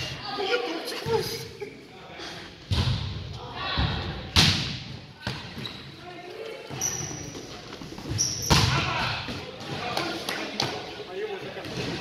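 A volleyball struck by players' hands and forearms during a rally in a gym: three sharp slaps, the loudest about four and a half seconds in, each echoing in the hall, with players' voices between.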